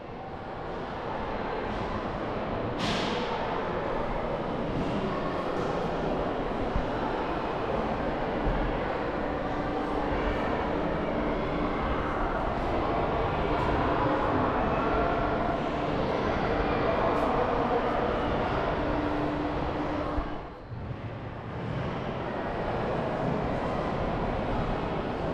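Busy indoor ambience of a large, echoing museum hall: a steady murmur of many visitors' voices with a low hum under it, dipping briefly near the end.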